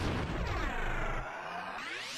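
Whooshing transition sound effect for a spinning logo graphic: sliding tones sweep downward, then about two-thirds of the way through rise back up, building toward a music sting.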